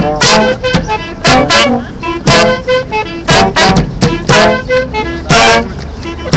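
Brass street band playing a tune: horns sounding short, separated notes, several a second, over a steady low rumble.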